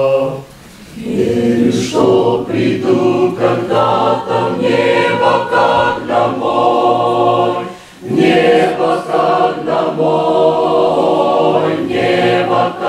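A mixed church choir of men and women singing a psalm in chords. A held chord ends just after the start, and after a short breath the singing picks up again. There is another brief break about eight seconds in before the next phrase.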